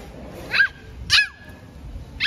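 Two short, high-pitched yelps from an animal, each rising then falling in pitch, about half a second apart.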